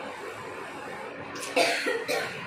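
A person coughs once near the end, a short harsh burst over steady room noise.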